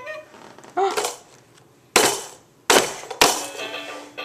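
Three sharp knocks or bangs: one about two seconds in, then two more under a second apart.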